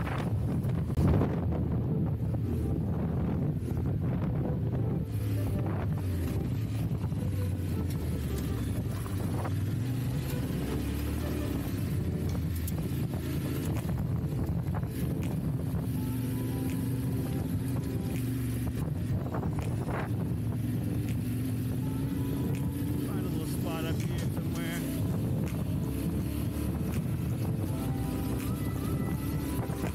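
Yamaha Ténéré 700's parallel-twin engine running steadily at road speed on a gravel road, with wind noise on the microphone and a brief knock about a second in.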